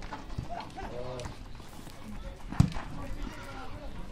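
A football kicked on a dirt pitch, one sharp thud about two and a half seconds in, the loudest sound. Faint shouting voices of players and onlookers run underneath.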